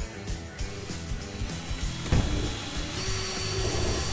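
Background rock music with a beat and a sharp hit about two seconds in. About three seconds in, a DeWalt cordless drill starts and runs with a steady whine as it bores into a panel.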